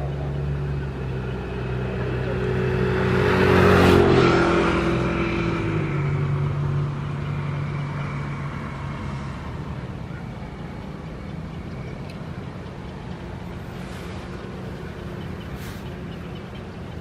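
A motor vehicle passing close by, its engine and tyre noise growing to loudest about four seconds in, dropping in pitch as it goes past, then fading away into steady outdoor background noise.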